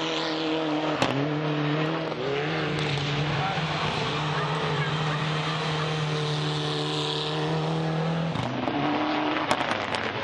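Mitsubishi Lancer Evolution rally car's turbocharged four-cylinder engine running hard at high revs as the car slides on dirt, its pitch dropping and rising a few times with the throttle. A sharp crack comes about a second in, and a few clicks come near the end.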